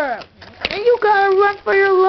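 A child's voice making sound effects with long held notes: one about a second in and another starting near the end, with a short knock just before the first.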